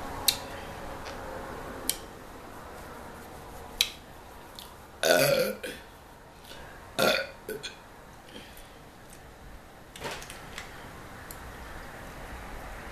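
A woman burping twice, loud and drawn out, about five and seven seconds in, from the carbonation of the cola she has just drunk. A few short sharp clicks come before.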